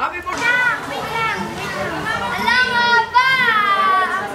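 Young people's high voices shouting and calling out together, with long drawn-out cries that rise and fall.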